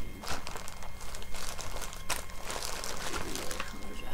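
Irregular crinkling and rustling from cross-stitch materials being handled and shifted about, heaviest in the middle of the stretch.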